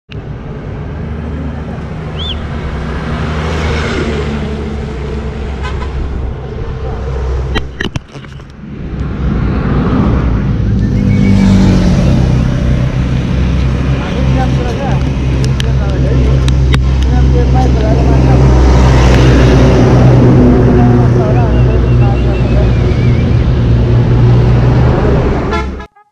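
Road traffic: heavy vehicles such as trucks running and passing close by, louder and deeper from about ten seconds in, with a brief drop near eight seconds.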